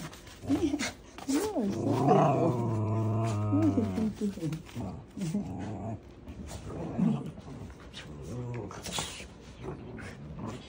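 Dogs growling and scuffling in rough play, loudest in a drawn-out vocal sound from about one and a half to four seconds in, with short yips and growls after it.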